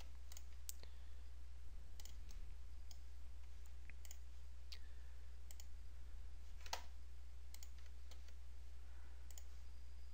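Computer mouse clicking: a dozen or so faint, irregularly spaced clicks over a steady low electrical hum.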